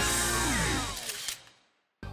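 Tail of an intro jingle ending in a whooshing sound effect that sweeps down in pitch and fades out about a second and a half in.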